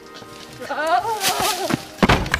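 A person's drawn-out yell, about a second long, its pitch wavering up and down.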